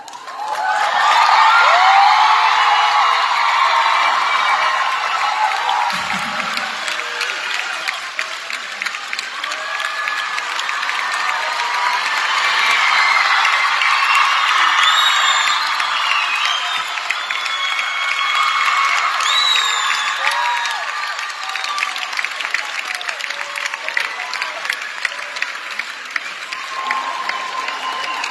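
Crowd applauding and cheering, with many short high shouts rising and falling over the clapping. It swells up within the first second, peaks about two seconds in and stays loud throughout.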